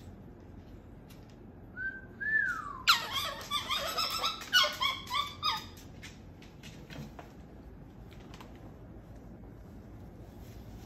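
Moluccan cockatoo calling: a short whistled note that rises and then falls about two seconds in, followed by about three seconds of rapid, choppy calls.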